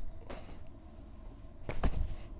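Medicine ball being thrown and caught between two people: a thud right at the start, then a quiet stretch, then a sharp double slap near the end as the ball lands in the hands.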